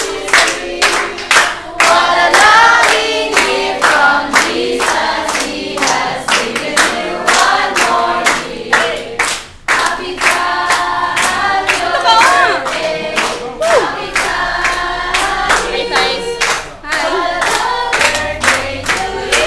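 A group of voices singing together, with steady hand-clapping about two claps a second keeping time.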